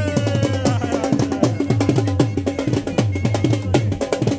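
Dhol drum beaten in a steady rhythm: deep bass strokes mixed with sharp stick clicks.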